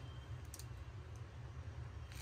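Faint room tone with a steady low hum and a couple of faint clicks from a plastic-wrapped handbag being handled.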